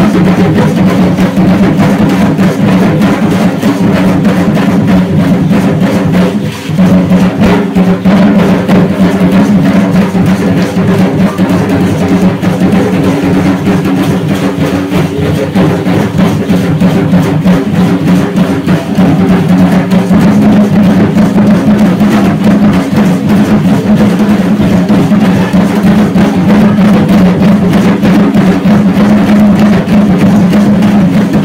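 Drum-led percussion music accompanying an Aztec dance: a dense, rapid, steady beat that holds loud throughout, with a brief dip about six and a half seconds in.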